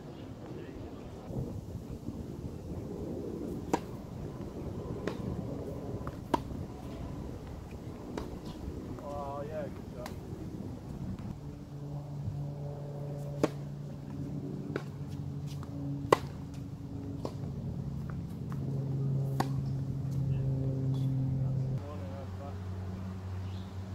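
Tennis ball being struck by racket strings and bouncing on a hard court, as sharp separate pocks one to two seconds apart. From about halfway, a steady low hum comes in and grows louder near the end.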